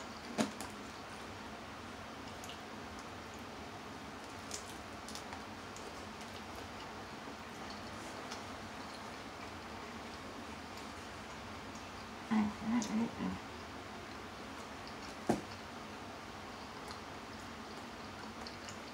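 Quiet eating sounds of someone chewing fried seafood, with a few sharp clicks of a metal fork, over a steady background hiss.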